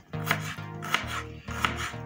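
Knife slicing through a red onion onto a cutting board: several crisp cuts, about one every half second.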